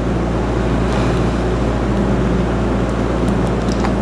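Steady low hum and noise in the background, with a few faint ticks near the end.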